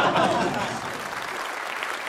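Audience applause, fading away over the two seconds.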